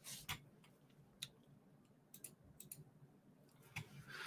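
Near silence with a handful of faint, scattered computer mouse clicks.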